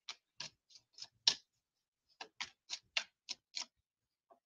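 Two short runs of light clicks, about three a second, with a pause of about a second between them; the loudest click comes about a second and a quarter in.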